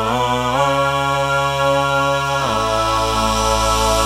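Layered a cappella voices holding a long final chord over a deep sung bass note. The chord shifts about half a second in and again midway, where the bass drops lower.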